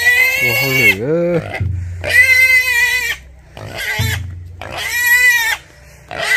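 A black pig squealing loudly while being pulled along on a rope: three long, high-pitched squeals of about a second each, with a lower, sliding grunt-squeal between the first two.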